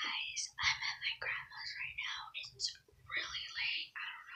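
A girl whispering close to the microphone, a run of hushed speech with short pauses.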